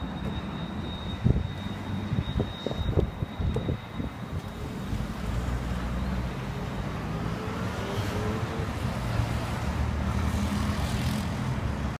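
Motor traffic: a vehicle engine's steady low hum that gets louder about halfway in and holds. A few short knocks come in the first few seconds.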